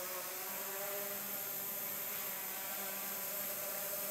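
Walkera QR Y100 mini hexacopter's six small electric motors and propellers buzzing steadily as it hovers, the pitch shifting a little as the throttle is adjusted.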